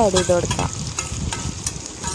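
Chopped chena poovu (elephant foot yam flower) frying in a pan, sizzling, with the scrapes and clicks of stirring. A voice trails off in the first half-second.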